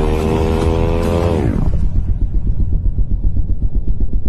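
Motorcycle engine running at high revs, its pitch rising slightly, then the revs fall sharply about a second and a half in and settle into a low, rapid pulsing.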